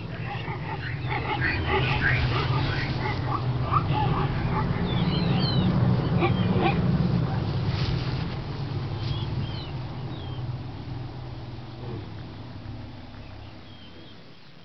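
Wildlife ambience: short bird-like chirps over a steady low rumble, the whole bed fading out gradually over the second half.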